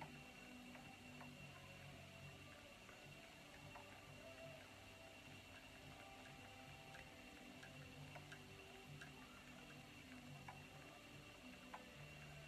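Near silence: room tone with a faint steady hum and a few faint, irregular ticks.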